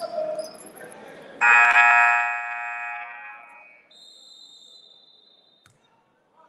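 Gym scoreboard horn sounding once, a loud buzz that starts suddenly about a second and a half in and fades out over the next two seconds. Before it there is a murmur of voices in the hall, and after it a faint high steady tone.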